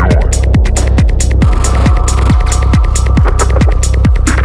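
Psytrance track: a steady four-on-the-floor kick drum at a little over two beats a second over a rolling bass, with hi-hats. A sustained synth tone comes in about a second and a half in.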